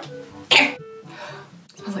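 A woman clears her throat once, sharply, about half a second in, between soft bits of her own voice.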